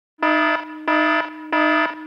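Electronic alarm-like beeping: a buzzy pitched tone repeating about one and a half times a second, three beeps.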